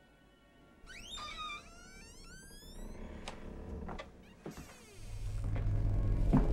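Eerie horror-film score and sound design: rising, gliding tones start about a second in, a few sharp ticks follow, and a loud low rumble swells in near the end.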